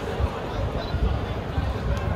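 Indistinct chatter of a crowd of people, many voices overlapping with no single voice standing out.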